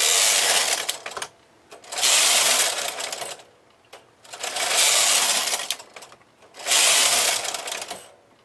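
Lace carriage of a Brother KH970 knitting machine pushed along the metal needle bed four times, each pass a rattling slide of about a second and a half, with short pauses between passes.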